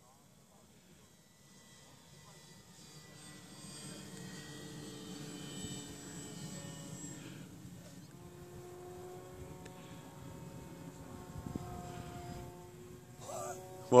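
Radio-controlled L-19 Bird Dog scale model airplane's motor droning in flight, growing louder over the first few seconds. Its pitch slides slowly up and down as the plane manoeuvres overhead.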